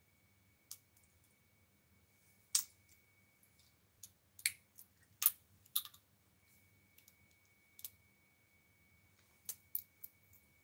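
About a dozen small, sharp clicks and taps at irregular intervals over a faint, steady high-pitched whine.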